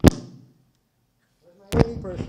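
A presenter's microphone being handled: a sharp knock on it, then the sound cuts out to dead silence for about a second, then another knock as it comes back on and a voice returns.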